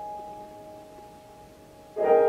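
A quiet grand piano chord left ringing and slowly fading away.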